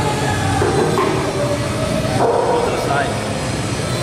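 Busy gym ambience: a steady, loud rumbling noise with indistinct background voices.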